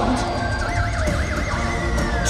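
A live metal band playing loud through an arena PA, heard from within the crowd. A high lead note with a wide, fast vibrato rises out of the mix about halfway in, then holds and slides slowly downward.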